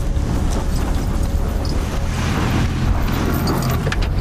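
Pickup truck towing an enclosed trailer driving past through snow, engine running with tyres churning and spraying snow, with a louder rush from about two seconds in.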